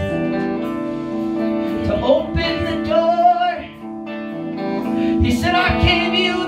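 Live worship song: electric guitar chords ringing with a voice singing over them, a sung line in the middle and another starting near the end.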